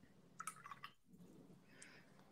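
Near silence: faint room tone with a few soft clicks a little under a second in.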